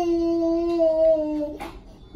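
Toddler crying in one long, slightly falling wail, then a sharp breath in about a second and a half in. She is still drowsy and confused from general anaesthesia.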